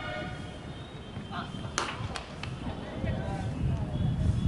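A sharp crack of a cricket bat hitting the ball a little under two seconds in, followed by two fainter clicks, with voices of players calling on the field.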